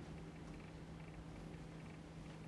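Faint room tone in a lecture room: a steady low hum under a soft hiss, with no event standing out.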